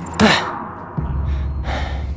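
A man's sharp gasp about a quarter of a second in, then a low, steady rumbling drone of dramatic background music from about a second in, with a short whoosh near the end.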